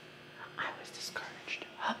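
Quiet whispered speech, a few short breathy phrases.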